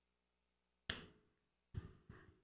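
Chalk tapping on a blackboard while a numeral is written: two short clicks, one about a second in and another near the end, in otherwise near silence.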